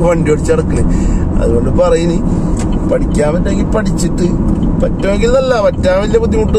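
A person's voice over the steady road and engine rumble of a car cruising on a highway, heard from inside the cabin. Near the end the voice holds a wavering note.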